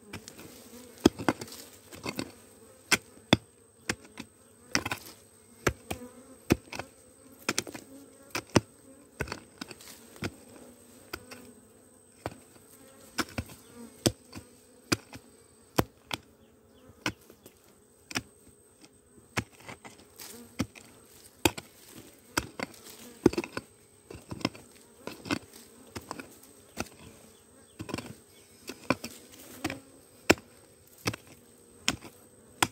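Wild honeybees buzzing in a steady low hum around their disturbed nest. A hoe blade chops into hard soil and roots over and over, about one to two sharp strikes a second.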